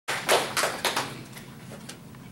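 A few sharp handclaps at about three to four a second, loud at first and dying away after a second, with one last clap near the end.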